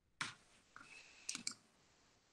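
A few faint computer clicks, two of them close together about a second and a half in, after a short soft rush of noise just after the start.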